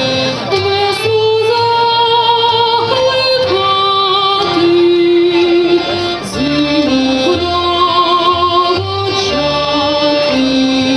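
Ukrainian folk dance music played live by a band of traditional instruments: a melody of held notes with a wavering pitch, moving step by step, over a bass line on the beat.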